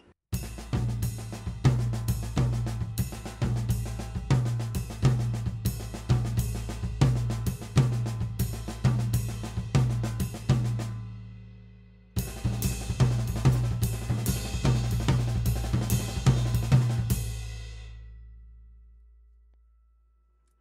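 Drum kit playing a nine-stroke quasi-linear fill in a groove, the sticks moving between ride cymbal and tom over regular bass drum strokes. It is played in two passages, a longer one and then a shorter one about twelve seconds in, and each stops with the cymbals ringing out.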